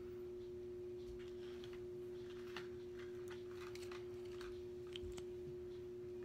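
A faint, steady hum at one pitch, with a few soft small clicks scattered through it.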